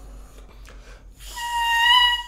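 A Jones Double Reeds student medium-hard oboe reed crowed on its own, off the instrument. After a moment of quiet breath, one steady high note sounds for about a second, starting past halfway. The reed is very hard: it is really hard to get a sound from it alone and takes a lot of air.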